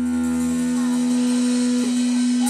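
Live electric guitar through an amplifier holding one long, steady note, with the low bass underneath dying away about a third of the way in.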